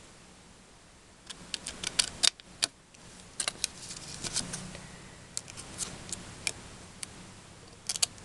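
Irregular light clicks and taps from handling a small paper tag, some in quick clusters, starting about a second and a half in.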